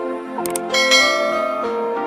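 Soft music of held notes, with two quick clicks about half a second in followed by a bright bell ding: the click-and-bell sound effect of a subscribe-button animation.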